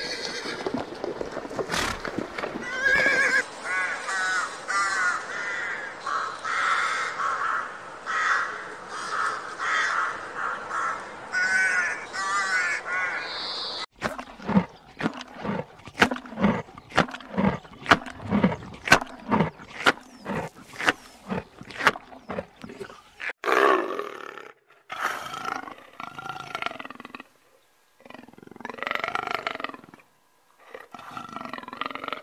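A horse neighing again and again with wavering calls for about the first half. After an abrupt cut, a run of short, evenly spaced animal sounds comes about twice a second, and a few louder, longer calls follow near the end.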